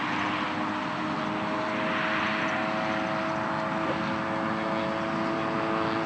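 Propeller-driven fixed-wing UAV flying overhead, its engine and propeller giving a steady drone with a constant pitch.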